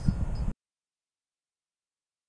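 Outdoor background noise, heaviest in the low end, cuts off abruptly about half a second in, followed by complete silence.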